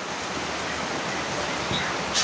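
Rain falling on the roof, a steady even hiss.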